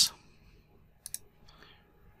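A few faint computer mouse clicks about a second in, a quick pair followed by a fainter one, over quiet room tone.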